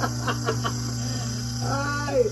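Stainless-steel electric juicer running with a steady motor hum while orange juice is run into a jug. A short vocal sound comes in near the end.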